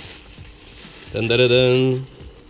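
Faint crinkling of a plastic bag as a router is handled inside it. Then, about a second in, a man's drawn-out hesitation sound, a single held "ehh" lasting nearly a second, which is the loudest thing.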